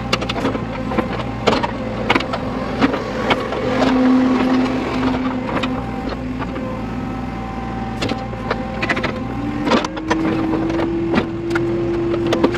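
Backhoe loader's diesel engine running under load, heard from inside the cab, with frequent sharp clanks and knocks as the backhoe arm and bucket dig. A whining tone holds steady from about four seconds in and fades after a few seconds, and a second one rises slowly in pitch over the last couple of seconds as the hydraulics take the load.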